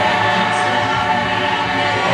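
A large choir, mostly women's voices, singing together and holding long notes, with a change of chord at the end.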